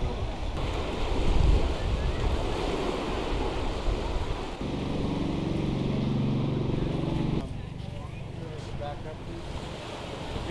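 Surf on the beach with wind buffeting the microphone. In the middle, a steady low hum holds for about three seconds, then stops abruptly.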